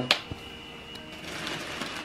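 A single sharp clap or slap of hands just after the start, then soft rustling of packaging paper and plastic being handled.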